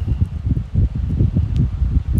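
Steady low rumbling noise with a dense crackle running through it.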